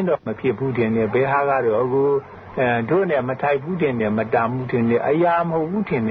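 A man speaking, on a muffled recording that has no top end.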